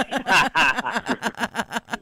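A person laughing: a quick, steady run of short laughs that dies away at the end.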